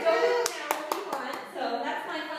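A short run of hand claps, about six in a second, starting about half a second in, among women's voices in the room.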